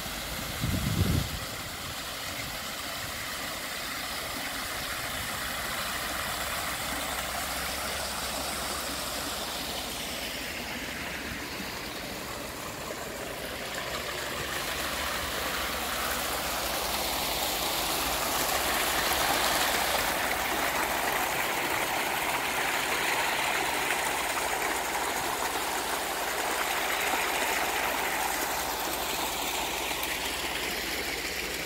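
Water running steadily over a stone garden cascade, a continuous rushing hiss that grows a little louder in the second half. A brief low thump about a second in.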